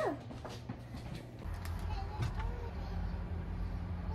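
Faint rustling and small room sounds. About a second and a half in, a steady low rumble of a car cabin begins, with faint background music over it.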